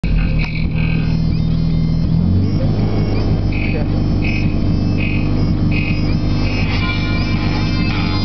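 Digital Designs DD9512F 12-inch car subwoofer playing bass-heavy music loudly, driven with about 3,000 watts in an attempt to blow it; the driver needed a recone and has its surround glued. The deep bass notes shift lower about two and a half seconds in.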